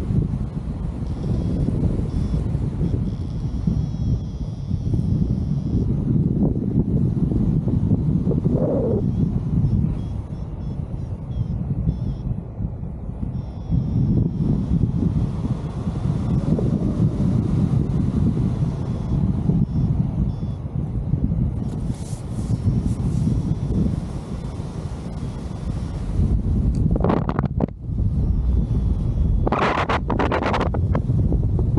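Airflow buffeting the camera microphone of a paraglider in flight: a steady low rumble that swells and eases in gusts, with a couple of brief sharper rustles near the end.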